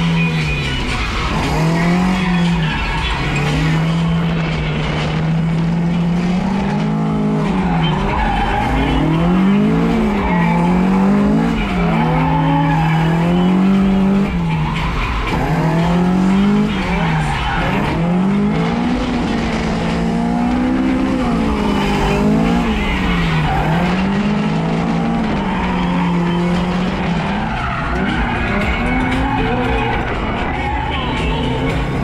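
Toyota AE86 Corolla's four-cylinder engine revving up and down over and over through drift after drift, heard from inside the car, with the hiss of tyres sliding underneath.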